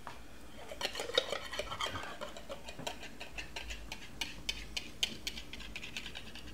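Quiet, irregular light clicks and clinks of kitchen utensils and dishes, a spatula being fetched from the kitchen.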